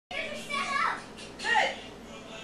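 Domestic cat meowing twice, high-pitched calls, the second sliding down in pitch.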